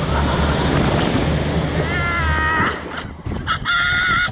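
Wind buffeting the ride-mounted camera's microphone as the Slingshot capsule swings through the air, with a rider's two high-pitched yells, a wavering one about halfway through and another near the end.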